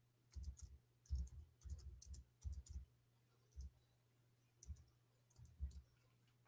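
Faint, irregular clicking of computer keys, in small clusters with pauses between them, over a faint steady low hum.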